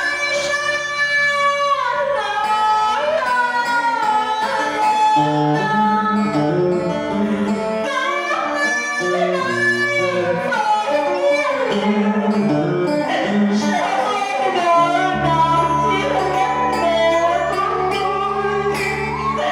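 A woman singing a slow, sliding, ornamented melody in a Vietnamese traditional stage opera, accompanied by plucked string instruments.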